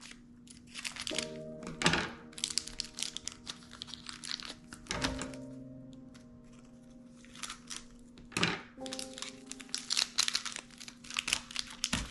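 Plastic cracker wrapper crinkling as it is cut open with scissors and handled, in irregular bursts of crackle with a few sharper snaps.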